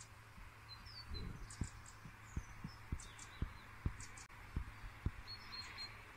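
Garden birds chirping in short high calls and quick glides, over a series of about ten soft low thumps between about a second in and five seconds in, with a steady low hum underneath.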